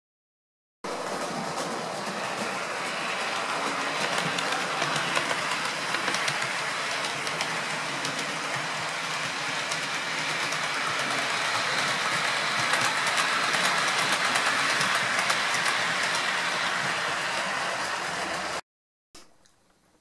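A model railway locomotive running along the layout's track: a steady whirr with many small clicks of wheels over the rails. It starts suddenly about a second in and cuts off abruptly near the end.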